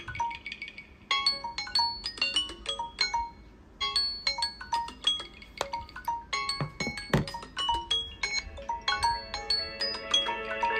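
Smartphone alarm ringtone playing a quick, marimba-like melody of short struck notes. The melody pauses briefly about a second in and again midway.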